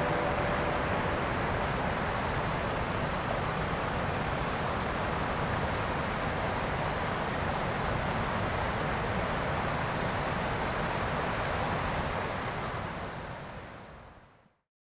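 Steady rush of river water over rocks, an even noise that fades out near the end.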